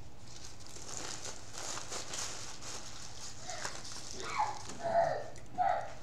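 Paper food wrappers crinkling and rustling as they are handled, with a few short whining sounds near the end.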